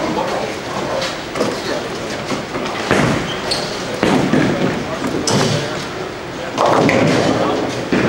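Busy bowling-alley din: indistinct chatter in a large hall, broken by about four sudden thuds and crashes of balls and pins on the lanes.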